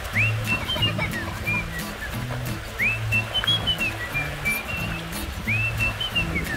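Background music: a whistled melody that opens each phrase with an upward swoop and then steps downward, over a repeating bass line, with a new phrase starting about every two and a half seconds.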